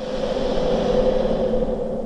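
A steady electronic drone, a held hum with a hiss over it, swelling to its loudest about a second in and starting to fade near the end: an end-credits sound effect.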